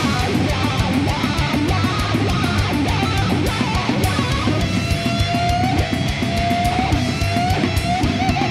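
Instrumental passage of a heavy metal song: distorted electric guitars and bass over a fast, dense beat. About halfway through, a high held note comes in and wavers near the end.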